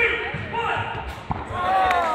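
Players' voices calling out in an indoor sports hall, with one long falling call near the end and a ball bouncing on the wooden court floor a little past a second in.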